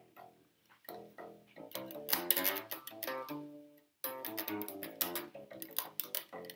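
A vintage 1965 Fender Precision Bass played fingerstyle: a run of plucked notes with a sudden brief gap about four seconds in. Its bridge saddles are held together under inward string tension, which has cured their ticking.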